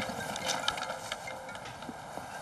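Outdoor ambience of a golf course: a steady background hiss with scattered faint ticks, and no distinct event.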